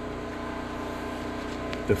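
A steady mechanical hum with a fine, rapid ticking underneath, unchanging throughout, from an unseen running machine.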